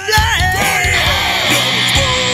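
A horror-punk rock song playing back from a studio mix: a yelled vocal that bends up and down in pitch over the full band with a steady drum beat.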